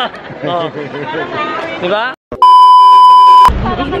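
Voices and crowd chatter, then a brief drop to silence and a loud, steady, high-pitched bleep tone lasting about a second, edited into the soundtrack, which cuts off abruptly.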